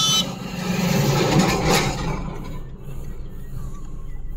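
Road traffic heard from a moving vehicle: a rushing noise swells to its loudest about one and a half seconds in, then slowly fades.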